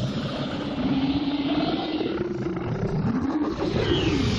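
A giant monster's long, low roar, a cartoon sound effect: one continuous rumbling growl whose pitch wavers slowly.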